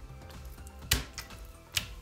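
Quiet background music with two sharp knocks, about a second in and near the end, from a kitchen knife and raw chicken breast being handled on a wooden cutting board.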